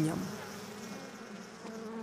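Honeybees humming in their hives: a faint, low, steady drone.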